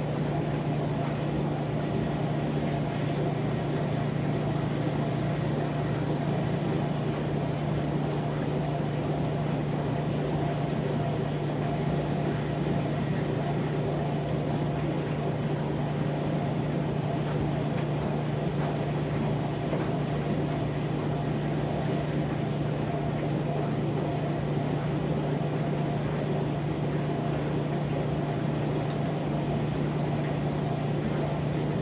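Commercial coin-op washers running mid-cycle, giving a steady low machine hum that does not change.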